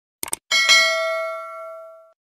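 A quick double mouse-click sound effect, then a bell-like ding struck twice in quick succession that rings on and fades over about a second and a half: the notification-bell sound of a subscribe-button animation.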